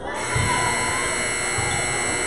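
Gym scoreboard buzzer sounding one long, steady electronic blare that starts abruptly just after the beginning.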